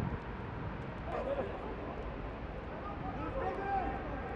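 Faint, distant shouts of players on the pitch, short calls about a second in and again near the end, over the low hum of an empty stadium with no crowd noise.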